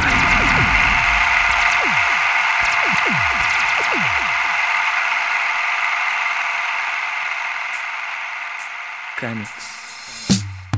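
Steady static hiss, like an old TV or radio between stations, held in a middle band, with a series of falling pitch sweeps underneath in the first few seconds. The hiss slowly fades and stops just before the end.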